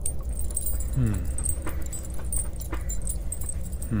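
A man's low, falling 'hmm' about a second in and again at the end, over a steady low ambient rumble and a light metallic jingling, like small metal links moving.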